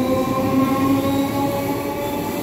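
Electric multiple-unit local train pulling out and running past at close range, a steady rumble with a whine that creeps slowly up in pitch as the train gathers speed.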